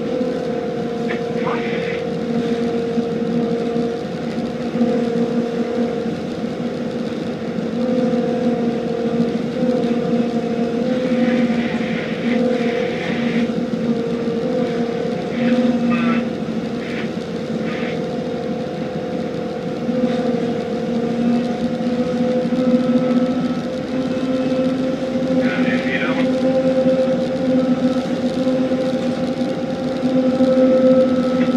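A tugboat's diesel engine running steadily under load while pushing a barge, a constant hum with water rushing along the hull.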